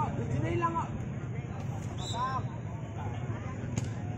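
Scattered voices of people around the court calling out in short phrases, a few seconds apart, over a steady low hum.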